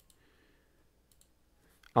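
Near silence broken by a few faint, short computer clicks as the script is restarted.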